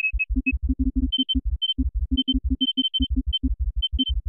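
Electronic music synthesized in SuperCollider: a fast, uneven stream of short low pulses with brief high sonar-like beeps above them. About a second in, the beeps step up slightly in pitch.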